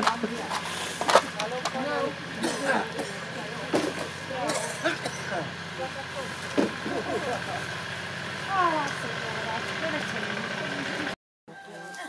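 People talking at a distance, with scattered knocks and rustles of rubbish being handled over a steady low hum. The sound cuts out briefly near the end.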